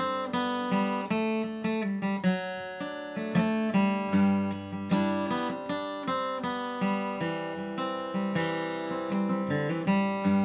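Taylor 110E acoustic guitar with Martin medium strings, flatpicked with a light Blue Chip TD40 teardrop pick. It plays a bluegrass-style passage of single-note runs mixed with strummed chords, several picked notes a second.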